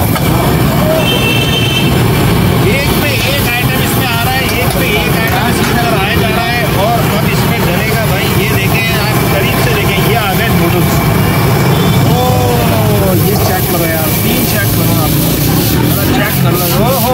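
High-output gas wok burner running with a steady low rumble under a wok of stir-frying noodles, with voices around it.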